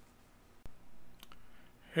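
Computer mouse clicks: one sharp click a little over half a second in, then two fainter quick clicks about half a second later.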